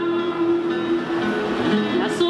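A woman singing a Garífuna hymn through a microphone, holding a long steady note that gives way to shorter notes partway through, with an acoustic guitar accompanying her.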